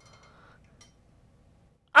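Faint rustling and handling noise as an acoustic guitar is laid down on a cushioned scale, then near quiet; a man's loud groan cuts in at the very end.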